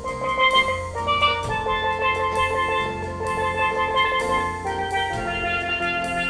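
Live band playing an instrumental with a steady beat: drum kit, electric bass, keyboard and electric guitar, with bright repeated pitched notes over the bass line.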